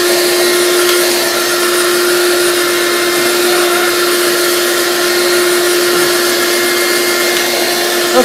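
Shop vac running steadily, pulling air through a Dust Deputy cyclone dust separator: a constant motor whine over an even rush of air.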